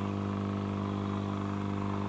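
SMD hot-air rework station blowing at a high air setting: a steady machine hum with a buzzy, many-toned edge.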